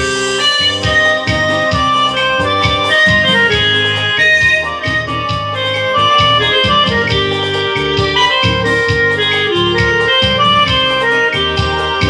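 Yamaha electronic keyboard played live: sustained melody notes over a steady, even beat.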